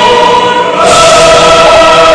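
Choral music: a choir holding long sustained chords, moving to a new chord a little under a second in.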